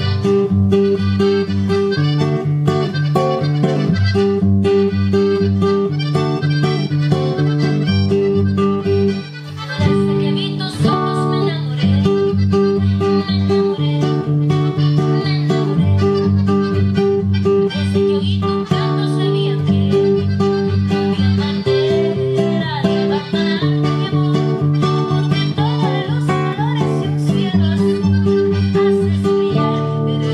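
Classical acoustic guitar strummed in a steady rhythmic pattern (rasgueo), its chords changing every second or two and mixed with picked notes (punteo). The playing dips briefly about nine seconds in.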